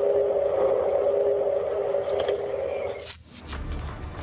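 Unexplained 'sky sound' on an amateur camera-phone recording: one loud, steady mid-pitched drone of two close tones. It cuts off suddenly about three seconds in, followed by a short sharp hit and a low rumble.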